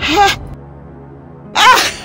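An elderly woman's two short, loud vocal bursts, a cry right at the start and a joyful laughing exclamation about one and a half seconds in, over a low, steady music bed.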